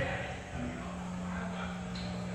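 A steady low electrical hum, of the kind stage amplifiers give off when idle, over faint room noise, with no instrument playing yet.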